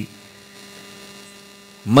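Steady electrical mains hum from the microphone and sound-reinforcement chain: a low buzz made of a few faint steady tones, exposed in a pause in a man's amplified speech. His voice breaks off at the start and comes back just before the end.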